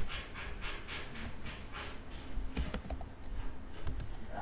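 Computer keyboard typing: a short run of sharp key clicks a little past halfway, and one more near the end, as a word is typed. Before that, a soft breathy sound repeats about four times a second and fades out.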